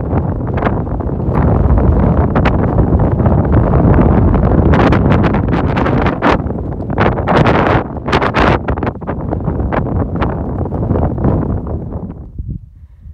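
Strong wind buffeting the microphone, a dense low rumble that surges and eases in gusts, with many sharp pops as the gusts hit.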